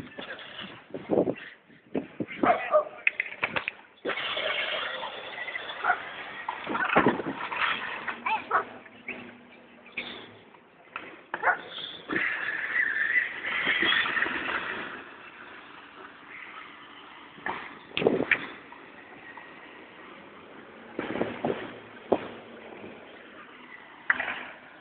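Child's battery-powered ride-on toy car driving on asphalt: its small electric motor and hard plastic wheels running, loudest as it passes close by about halfway through, with scattered knocks.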